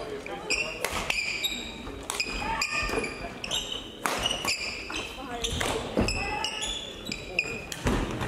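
Badminton hall ambience: sharp racket-on-shuttlecock hits and short shoe squeaks on the court floor, mixed with voices echoing in the large hall.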